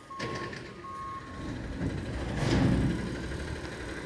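Front-loading CNG garbage truck: its reversing alarm sounds a steady high beep that stops about a second and a half in, then the truck's engine noise swells and is loudest a little past halfway.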